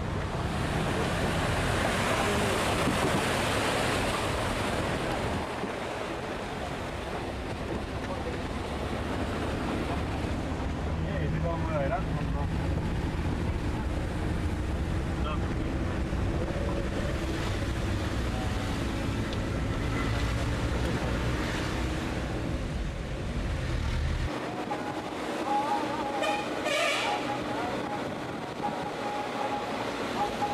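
Engine and road noise inside a moving van: a steady low rumble with a hiss of wind. The deep rumble drops away suddenly about three-quarters of the way through.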